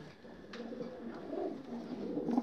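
Pigeons cooing, low and wavering, with a brief light click about half a second in.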